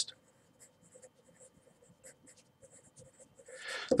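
Pencil writing on paper: a run of faint, irregular scratching strokes as a word is written out. A short breath is heard near the end.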